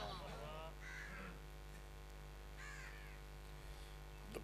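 Two faint crow caws about a second and a half apart, over a low steady hum from the sound system.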